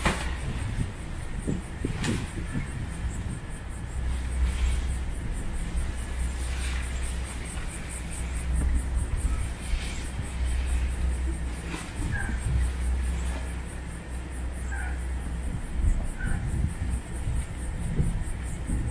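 Wind buffeting the microphone with an uneven low rumble, over which a pop-up screen tent's nylon fabric and flexible hoop frame rustle and swish in several brief bursts as it is twisted and collapsed for packing. A high, rapidly pulsing buzz runs underneath, with a few short chirps in the second half.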